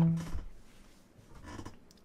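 A low synthesizer note from the OP-Z fades out over the first half second, ending the melody that came before it. Then it is nearly quiet, with a few faint clicks of keys and buttons being handled.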